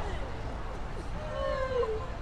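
A passer-by's voice: one drawn-out, falling vocal sound of under a second, about halfway through, over a steady low hum of street noise.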